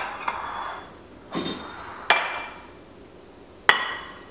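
Kitchen tableware clatter: a metal spoon clinking and scraping against glass mixing bowls, and a plate set down on the counter. It comes as several sharp clinks about a second apart, the last near the end ringing briefly like glass.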